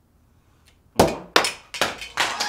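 A small plastic video doorbell knocked off the door and clattering on the ground: three sharp knocks about a second in, each a little weaker, as it bounces.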